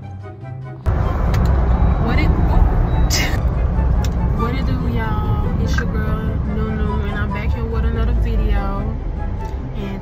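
Steady, loud, low road and engine rumble inside a moving car's cabin. It cuts in abruptly about a second in, replacing a short stretch of music, and from about halfway a woman's voice talks over it.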